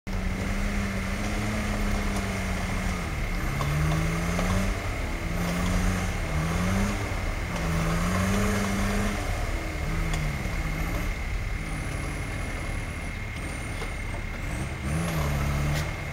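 Volkswagen T3 Syncro pickup's engine labouring as the van crawls up a muddy, rutted track, its revs rising and falling again and again.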